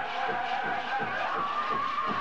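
Pow wow drum group singing a grand entry song in high, held voices over a steady beat on the big drum.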